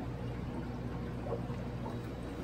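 Steady hum of aquarium pumps and filters, with water trickling.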